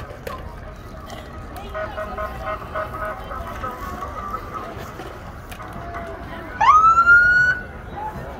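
Police car siren giving one short rising whoop near the end, over steady outdoor street noise.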